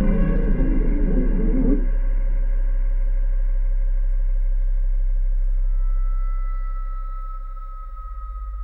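Ambient electronic music with no voice: a deep sustained bass drone under several long held synthesizer tones. A dense, busy low-mid texture fades out about two seconds in. Near the end a higher tone slides slightly downward as the overall level dips.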